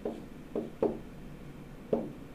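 Stylus pen tapping on a touchscreen during handwriting: four short knocks at uneven intervals.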